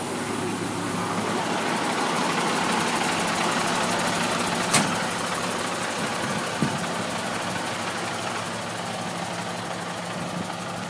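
International 4900 truck's diesel engine idling steadily, with a single sharp click about halfway through.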